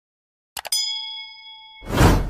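Subscribe-button end-screen sound effects: two quick mouse clicks, then a bright notification-bell ding ringing for about a second. A loud burst of noise swells up near the end.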